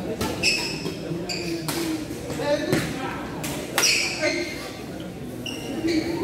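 Badminton rally: several sharp racket strikes on the shuttlecock, with short squeaks of sneakers on the court floor, ringing in a large echoing hall over the chatter of onlookers.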